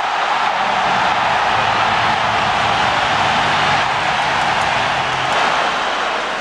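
Large stadium crowd cheering loudly and steadily, the celebration of a penalty goal for Mexico.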